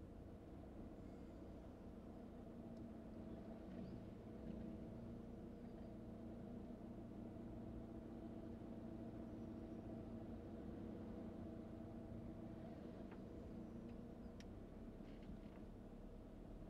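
Faint, steady drone of a car running at low speed, heard from inside the cabin, with a few light ticks.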